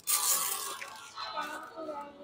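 Gift wrapping paper tearing and crinkling as a present is unwrapped, loudest in the first half second, with faint voices behind it.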